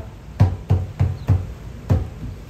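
Ipu gourd drum keeping a steady hula beat, low hollow strokes about three a second, with no chanting over it.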